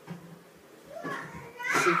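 Children's voices: quiet for about the first second, then a boy speaks up, loudest near the end.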